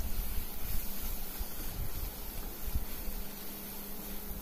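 Sliced onions, curry leaves and spice masala frying in a non-stick pan, a steady sizzle with a spatula stirring and scraping through it in soft, irregular knocks.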